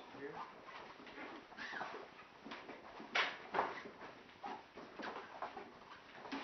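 Indistinct voices talking in a small room, with two sharp knocks a little past halfway, half a second apart.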